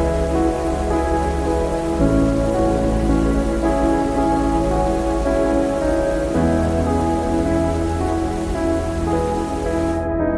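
Steady rain ambience mixed over slow ambient music of long held chords, which change about two seconds in and again past the sixth second.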